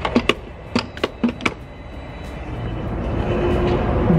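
A handful of sharp clicks and knocks as a gas pump's fuel nozzle is handled. They are followed by a steadily rising rush of noise, with music starting to come in near the end.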